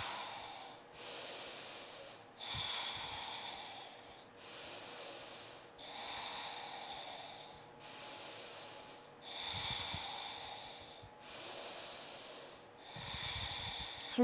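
A woman breathing slowly and audibly during a held yoga pose: about four full breaths, each inhale and exhale a steady hiss lasting roughly one and a half to two seconds.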